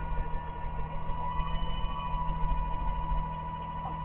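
Garbage truck engine idling with a steady low rumble and a faint steady whine above it, heard through a security camera's microphone.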